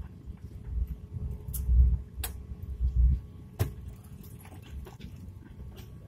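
Low rumble of an Airbus A350's cabin noise as the airliner taxis onto the runway, swelling twice, with two sharp clicks.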